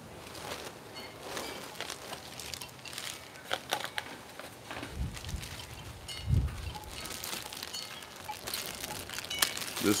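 Clear plastic packaging bag crinkling and rustling as a column-speaker section is pulled out and handled, with scattered small clicks and two low thumps about five and six and a half seconds in.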